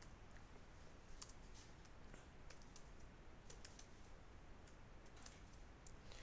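Faint keystrokes on a computer keyboard as a command is typed: about a dozen light clicks at an uneven pace over quiet room tone.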